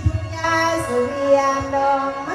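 A woman sings through a microphone and PA in a Thai/Lao folk style, her voice sliding between long-held notes. She is accompanied by the steady chordal drone of a khaen, a bamboo mouth organ. There is a low thump just at the start.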